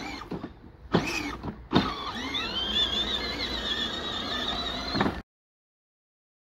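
Power Wheels ride-on Jeep's electric drive motors and gearboxes whining as it drives over grass: a couple of short starts, then a steady run whose pitch wavers with speed. It cuts off abruptly near the end.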